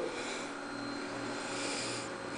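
Quiet, steady background hum and hiss of room tone, with faint soft hissy noise about a quarter-second in and again near the end.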